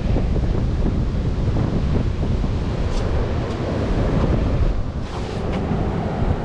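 Wind buffeting the microphone: a loud, unsteady low rumble.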